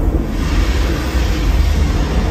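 Deep, continuous rumble of a thunder sound effect played through a large hall's sound system.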